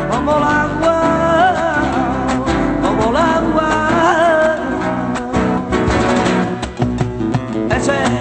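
Live flamenco singing: a man's voice wavering through long ornamented lines over flamenco guitar. About five seconds in the voice stops and the guitar goes on alone with sharp plucked and strummed strokes.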